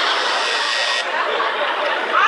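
Studio audience laughing, a steady loud wash of laughter following a punchline.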